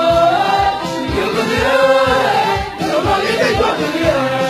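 A choir singing together, with a steady low beat underneath.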